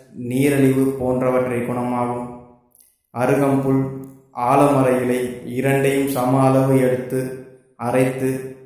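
A man's voice in long, chant-like phrases held at a steady pitch, in Tamil, with brief breaks about three seconds and four and a half seconds in.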